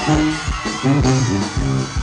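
Live Mexican band music, an instrumental passage with a bouncing bass line that steps between notes and a guitar over it.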